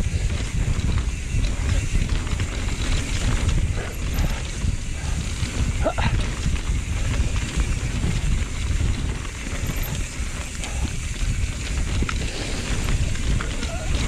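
Wind buffeting an action camera's microphone during a fast mountain-bike descent, with the tyres rolling over a packed dirt trail and a few knocks from the bike.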